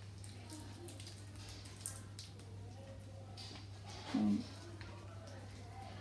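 Faint rustling and small ticks of hands handling leaves, twigs and sticky tape, over a steady low hum. A short hummed voice sound comes about four seconds in.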